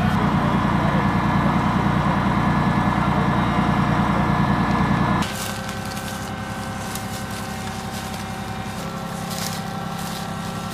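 A vehicle engine running steadily, cut off suddenly about five seconds in. After that, quieter footsteps crunching through dry leaves and twigs over a faint steady hum.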